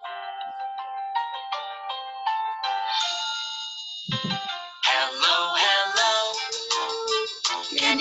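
Children's action song playing: a short tinkling intro of separate plucked notes, a brief low thump about four seconds in, then the sung vocal begins about five seconds in.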